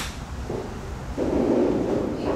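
Wind rumbling on the microphone, swelling louder about a second in, with a single sharp click at the very start.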